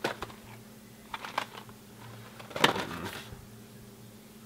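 Containers being shifted on a wooden kitchen cabinet shelf while a French press is reached for: scattered light knocks and clicks, with the loudest clatter about two and a half seconds in.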